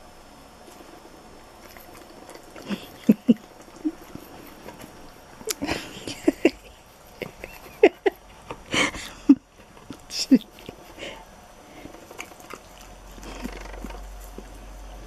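A Siberian husky licking cake and cream and smacking its lips, in a run of short, irregular wet smacks and clicks from about three seconds in until near the end.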